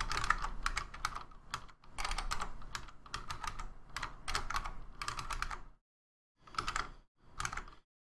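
Typing on a computer keyboard: a quick run of keystrokes that stops about six seconds in, then two short clusters of keys.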